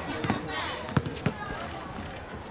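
A basketball bouncing: a few sharp thumps, two of them close together about a second in, over people talking.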